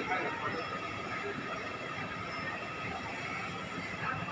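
Supermarket background noise: a steady hum with faint, indistinct voices.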